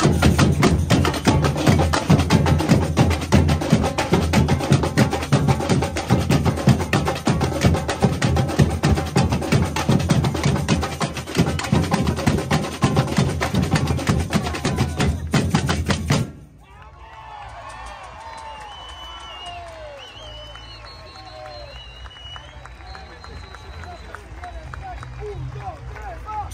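Carnival batucada drum corps, surdo bass drums and other drums, playing a loud, fast samba rhythm that cuts off suddenly about sixteen seconds in. After the break, a much quieter stretch of crowd voices and shouts follows, with a shout of "go" at the very end.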